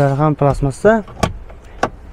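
A man's voice in short phrases, then two sharp clicks in the second half as the car's glovebox latch is released and the lid drops open.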